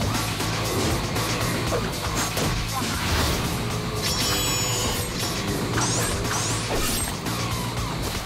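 Action-trailer sound mix: music with a sustained low layer under a dense run of sound effects, rapid hits, clashes and mechanical clanking, with a few quick rising swishes about six seconds in.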